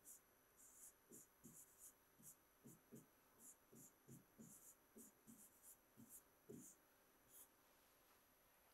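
Faint, quick taps and scratches of a stylus writing on an interactive display screen, a run of short strokes at about two to three a second.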